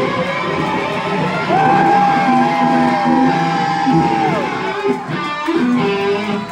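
Live jam band playing: electric guitars, bass and drums, with a long held lead note that slides up into pitch about a second and a half in and bends down and away about three seconds later.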